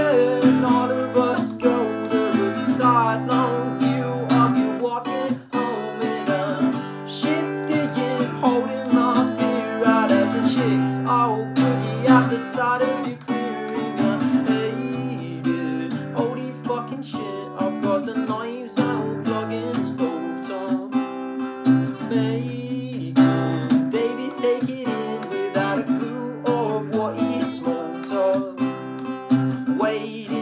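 Steel-string acoustic guitar with a capo strummed in a steady chord pattern, its bass notes changing every couple of seconds. A male voice sings along over it at times.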